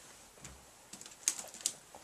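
A few light clicks and taps from handling a small digital kitchen scale and the books it sits on as they are picked up; the two sharpest come close together in the second half.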